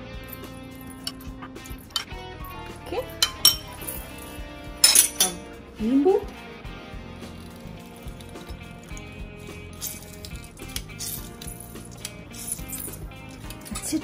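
A metal spoon and a metal hand-press lemon squeezer clink and scrape against ceramic bowls as curd and lemon are added to a marinade, in scattered clicks, the loudest about five seconds in. Soft background music runs underneath.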